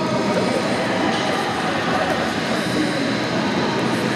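Many voices mixed together, echoing in a large domed stadium over a steady background roar.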